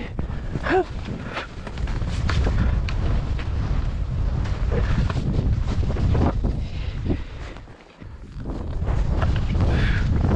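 Wind buffeting a skier's camera microphone during a descent, with short scrapes of skis on snow and a gasp about a second in. The rush drops away briefly just before eight seconds, then returns.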